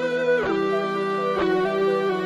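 Instrumental background music led by a guitar: slow held notes that slide down into the next about half a second in, with another note change about a second later.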